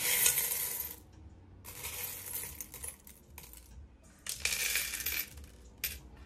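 Handfuls of small metal charms being stirred and scooped in a ceramic bowl: loud jangling and clinking in bursts, the first lasting about a second, a fainter one about two seconds in, and another strong one after four seconds, with some charms clattering onto a dish near the end.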